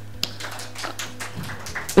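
A few light, irregular taps and clicks in a quiet hall, over a low steady electrical hum that stops near the end.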